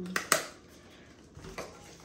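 Two sharp clicks in quick succession near the start, then a few faint light knocks.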